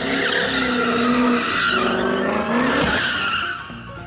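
A car being drifted, its engine revving hard while the rear tyres squeal in a wavering, sliding screech. The sound drops away near the end.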